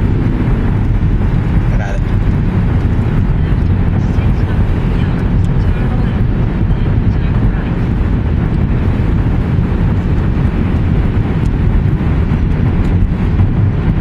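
Steady low rumble of road and tyre noise inside the cabin of a moving Toyota Prius.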